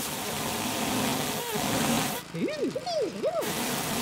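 Garden leaf vacuum sucking up a pile of dry leaves, a steady rushing hiss. About two seconds in the rushing drops out for about a second while a voice makes a few rising-and-falling whooping glides, then the rushing resumes.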